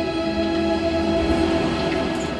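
Background music from a film soundtrack: a sustained, droning chord held steady under a low rumble.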